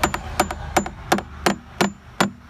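A claw hammer tapping a fiberglass boat transom, about six light strikes at roughly three a second, each with a short high ring. The tapping sounds the transom for hollow voids that would mean a rotten core.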